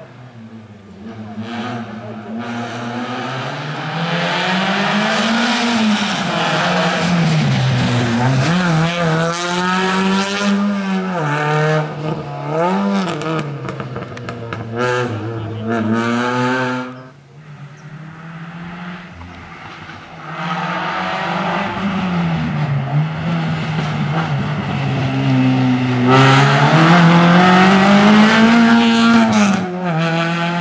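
Renault Clio race car's four-cylinder engine revving hard through cone chicanes. Its pitch climbs and drops sharply again and again as it comes off the throttle and picks up between the gates. It is quieter for a few seconds after about 17 s, then builds again to a long high-rev climb near the end.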